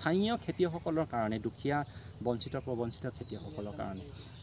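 A man speaking, with a faint steady high-pitched insect chirring behind the voice.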